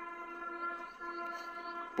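A horn sounding one steady note for about two seconds, with a short break about a second in.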